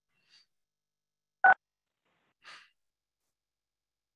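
Dead silence on an online call's audio, broken by a faint tick just after the start, a very short, loud beep about a second and a half in, and a soft breathy puff about a second later.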